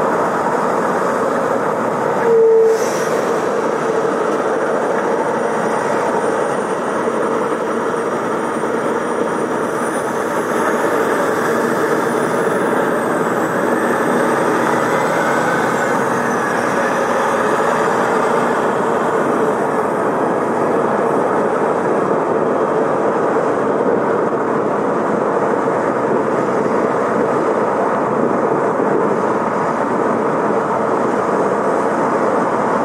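Steady road and tyre noise of a car driving at speed on a highway. A short tone with a click sounds about two and a half seconds in.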